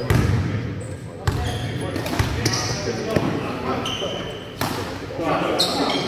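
A basketball bouncing several times on the sports-hall floor, with indistinct players' voices around it.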